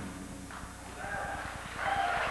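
A live rock band's sound dies away into a brief lull: faint low stage rumble and a thin held note about a second in, then the sound building again near the end as the band comes back in.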